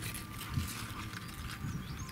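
Soft, irregular handling knocks and rustling as hands move beet leaves aside in a plastic container bed, over a quiet outdoor background with a low rumble.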